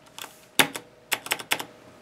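Numpad Plus keycap on a Razer BlackWidow Ultimate 2013 being pressed down onto its Cherry MX Blue switch and wire stabilizer, giving a quick series of about eight sharp plastic clicks. The loudest click comes about half a second in and a rapid cluster follows.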